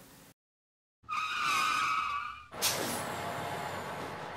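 Intro sound effect after a brief silence: a tyre squeal lasting about a second and a half, followed by a rushing, hissing whoosh with a falling tone.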